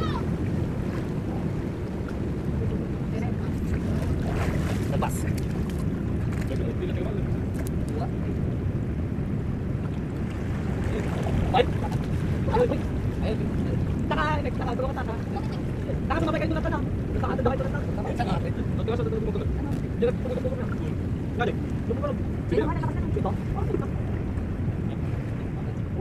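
Steady wind noise on the microphone mixed with sea surf, with short bits of voices now and then in the second half.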